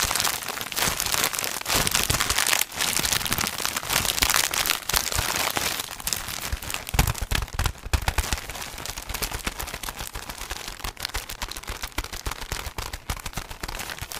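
Thin plastic wrapping around a multipack of sponges crinkling and crackling continuously as it is squeezed and turned in the hands, with a few duller handling thumps about halfway through.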